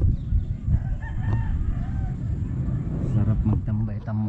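Wind buffeting the microphone in a steady low rumble, with a rooster crowing about a second in.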